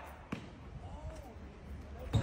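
A single sharp knock on the street about a third of a second in, followed by a faint, distant voice.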